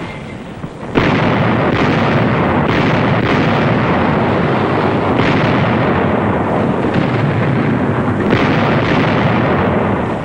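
Artillery barrage: a dense, continuous din of gunfire and shell explosions that starts abruptly about a second in, with several sharper blasts standing out in it.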